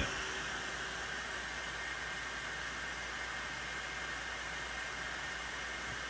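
Anycubic Kobra 2 Max 3D printer running with its replacement Noctua 92 mm base fan, a soft, steady hiss: very quiet, the result of swapping out the loud stock fan.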